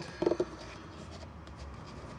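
Faint rubbing and handling of an oil filter element, fingers moving over its metal end cap and pleated paper as it is turned in the hand.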